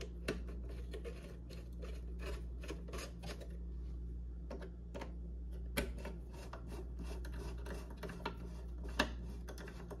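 Hand screwdriver driving small screws into the top cover of a Singer sewing machine: a quiet, irregular run of small clicks and scrapes from the bit and the screw threads, with a sharper click just before six seconds and another at about nine.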